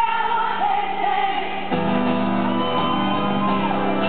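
Live amplified performance: a woman belting a long, high sung line over a strummed twelve-string acoustic guitar, the held note sliding down near the end.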